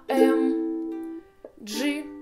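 Ukulele strummed once on an A minor chord, ringing and fading over about a second, then a G chord struck near the end.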